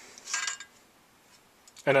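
A ballpoint pen scraping briefly against the sheet-metal casing of a hard disk unit as it is pulled out from where it was wedged, followed by a few faint clicks.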